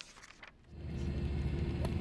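A brief near-quiet, then, a little under a second in, a steady low rumble of outdoor background noise comes in and holds.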